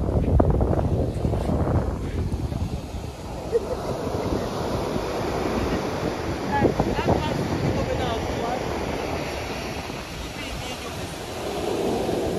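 Ocean surf breaking and washing up the shore, with wind buffeting the microphone.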